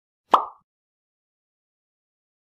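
A single short pop sound effect in an animated intro, a quick plop that fades within a quarter of a second.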